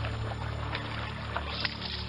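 People wading through a shallow stream, their feet splashing through the water in a run of short, irregular splashes over the constant rush of the stream, with a steady low hum underneath.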